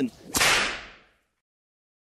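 One sharp crack with a fading tail about a third of a second in, used as a hit sound effect at the cut to the title card. It dies away within a second into dead silence.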